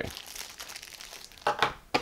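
Plastic packaging crinkling and rustling as accessories are handled in a box, with a couple of sharper crackles near the end.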